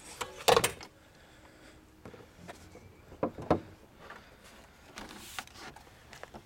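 Car body panels being handled on a Nissan Leaf, as its charge-port lid is shut and its hood is opened. There is a sharp clunk about half a second in, then two knocks close together a little past three seconds and a fainter one near five.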